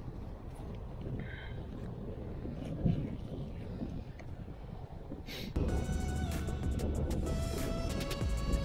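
Handling noise from a camera bag being rummaged through during a lens change, with small clicks over a low outdoor rumble. About five and a half seconds in, background music starts and takes over.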